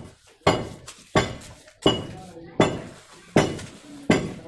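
Metal clinks at a steady rhythm, one sharp strike about every three-quarters of a second, each ringing briefly before fading.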